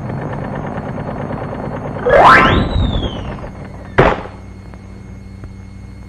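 Cartoon sound effects: a low rumble, then a loud whistle that shoots up in pitch and slowly falls away, the zip-off effect for a character dashing out of frame, followed by a sharp crack about four seconds in.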